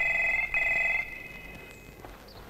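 Mobile phone ringing: two short electronic ring pulses in the first second, its steady high tone then fading away.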